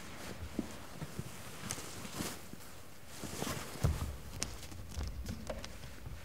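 Irregular soft footsteps and small knocks as a barefoot person walks to a pedal harp and settles onto a chair at it, with a louder thump about four seconds in.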